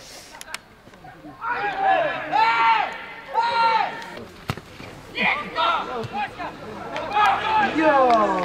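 Footballers shouting on the pitch: several long drawn-out calls, a single sharp knock about halfway through, and a burst of shouting near the end as a goal goes in.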